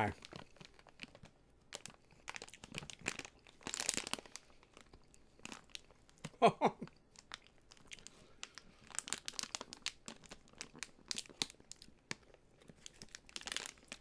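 Eating coated popcorn close to the microphone: scattered crunching and crinkling crackles throughout, with a short laugh about six and a half seconds in.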